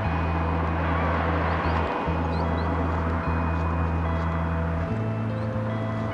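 Background music: held low bass notes that change every second or two, under a steady hiss, with faint high chirps.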